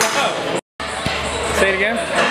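Men's voices in a gym, broken by a brief cut to silence, with a single dull thud about a second in.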